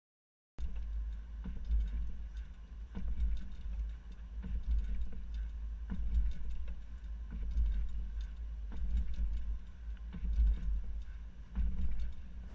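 Low rumble of a slowly moving vehicle, heard from a camera at its rear hitch, with scattered light clicks and rattles from a loaded hitch-mounted platform bike rack as it rolls over speed bumps. The sound cuts in about half a second in.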